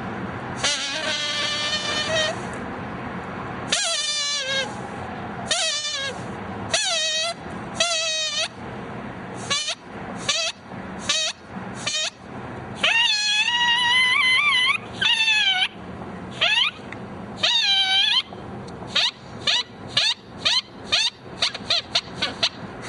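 A drinking straw blown as a squeaker, giving a run of high, reedy squeals whose pitch slides down and back up. The squeals start long and come shorter and faster near the end.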